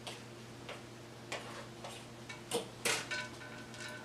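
Comb strokes through a synthetic-hair topper on a mannequin head: a series of short, faint, scratchy ticks at irregular intervals, the strongest two a little after halfway.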